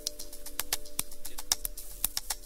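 Sparse electronic film soundtrack: irregular sharp clicks, about five a second, over a few faint held tones that fade out about halfway through.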